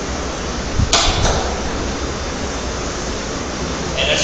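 Steady background hiss with a low hum, and one sharp click about a second in.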